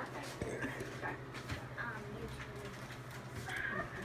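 A dog whimpering and whining faintly a few times, with faint voices in the room over a low steady hum, and a couple of light knocks as meat is cut on a table.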